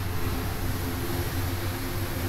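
Steady low mechanical hum with a faint hiss over it, even throughout.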